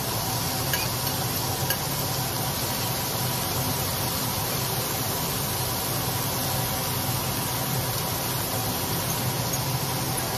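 Thin steak sizzling steadily in a hot skillet. A few light clicks of a metal spoon on the bowl and pan come in the first two seconds.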